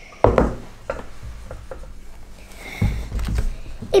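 Knocks and clicks of felt-tip markers and hands on a table: one sharp knock just after the start, then scattered small clicks and a few low bumps.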